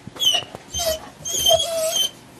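Golden retriever whining through its nose: three high-pitched whines, the last and longest running nearly a second. It is begging to be let in to the bath.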